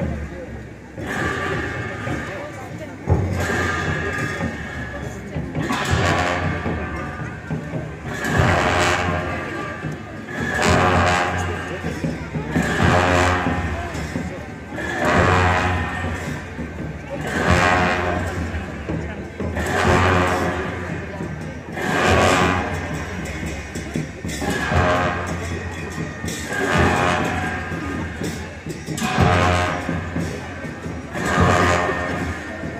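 Tibetan Buddhist monastic ritual music for a masked Cham dance: drum and cymbal strokes in a slow repeating cycle, swelling loud about every two seconds, with a sustained pitched part over them.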